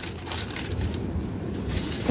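Faint, low rustling and handling noise of a plastic tray and baking paper being moved about on a tabletop.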